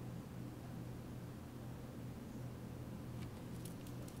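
Quiet room tone with a steady low hum; near the end a few faint light clicks as a small rhinestone is pressed onto a press-on nail with a gem pen.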